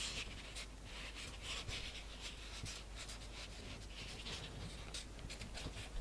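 Faint, irregular soft rustling and brushing from fingers pressing and folding thin sugar-paste petals around a sugar rose on a foam pad.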